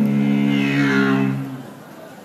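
Beatboxed dubstep bass into a handheld microphone: a low, buzzing vocal drone with a sweeping tone over it that falls in pitch, cutting off about a second and a half in.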